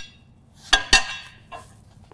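Two quick metallic clinks about a fifth of a second apart, each with a short ring: loose steel mower-blade hardware (the removed blade, its bolt and cupped washer) knocking together as it is handled.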